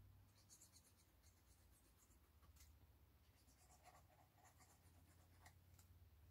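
Near silence with faint rustles and small ticks of paper card being handled while glue is squeezed onto its tabs.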